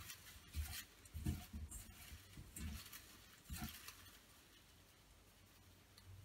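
Faint rustling of folded paper slips and a cloth towel as a hand stirs the slips in a bowl, in several short bursts with soft low bumps, dying away about two-thirds of the way through.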